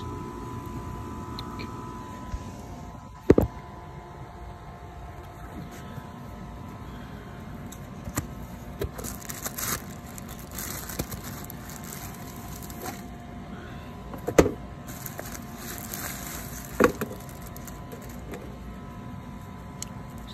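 Binocular packaging being unwrapped by hand: a cardboard box handled and a plastic bag crinkling in short bursts. Three sharp knocks or snaps stand out, about three seconds in and twice in the second half. A faint steady hum runs underneath.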